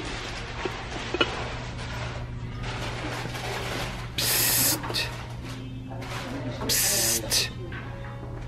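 Two short hissing bursts, each about half a second long, about four and seven seconds in. Under them are a steady low hum and faint background music and voices.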